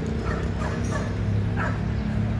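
A dog giving a few short, high yips, each falling in pitch, over a steady low hum.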